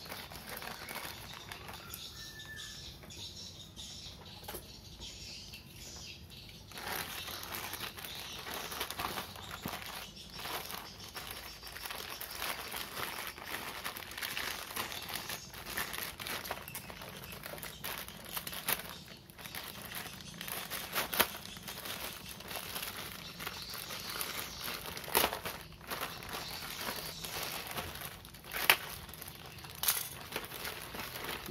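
Plastic courier mailer bag being handled and pulled open by hand, crinkling and rustling, louder after the first several seconds, with a couple of sharp clicks near the end.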